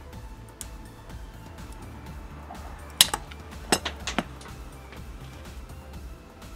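Quiet background music, and about halfway through a quick run of five or six sharp metallic clinks from a breaker bar and its socket knocking against the lug nut as they are handled.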